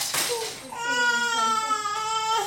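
Six-month-old infant crying: one long, loud cry at a nearly steady pitch that begins about a second in.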